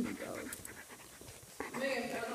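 A dog panting rapidly close to the microphone, with short breathy strokes.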